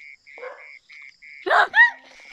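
A night-calling creature repeats a short, high call about three times a second. Near the end a woman exclaims "hey" and laughs; this is the loudest sound.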